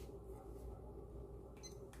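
Quiet room tone: a low steady hum, with a couple of faint short clicks near the end.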